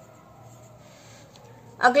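Pencil writing on a paper exam sheet, circling a number with a faint, soft scratching. A voice starts speaking near the end.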